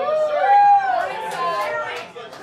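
Audience members calling out from the crowd: a few high, overlapping shouts that rise and fall, loudest about half a second in, over crowd chatter.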